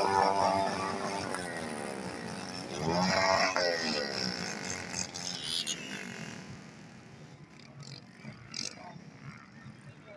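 Engine of a powered hang-glider trike (microlight) revving up and back down twice, the second rev about three seconds in. After that its note fades as the trike moves away across the ground.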